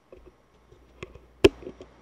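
Close-up handling noise on the Arcano ARC-MICAM shotgun microphone as its gain switch is flipped to +10 dB: light rubbing and a few small clicks, with one sharp click about one and a half seconds in.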